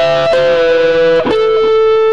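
Electric guitar playing a slow single-note lead fill high on the neck: three picked notes, the pitch stepping up at the start and back down, then the last note held ringing.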